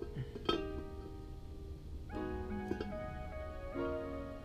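Background music of plucked-string chords, in the manner of a ukulele or guitar, with a fresh chord struck about two seconds in and another just before the end.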